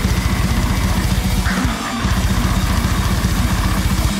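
Heavy metal band music: distorted guitar and bass over fast, driving drums, with a short break a little under two seconds in.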